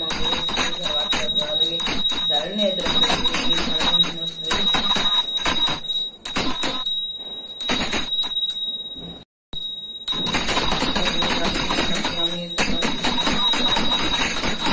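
A puja hand bell rung rapidly and continuously during the lamp offering, with a woman's voice chanting along. The ringing breaks off about six seconds in, stops almost entirely just after nine seconds, and starts again a second later.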